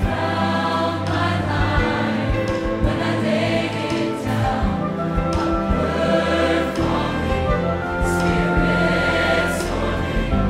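Large mixed choir singing a contemporary worship song with full orchestra, over sustained chords and a held bass, with a few percussion hits.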